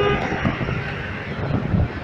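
Footsteps and camera handling noise, with a few low thumps about half a second in and again near the end, over steady background noise.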